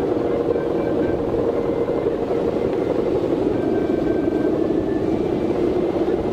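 Steady droning hum of a Balinese kite's bow hummer (guwangan) vibrating in strong wind, with faint short higher tones coming and going.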